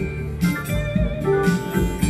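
Acoustic guitar played flat on the lap in slide style: an instrumental passage of picked notes over a steady, rhythmic bass pulse.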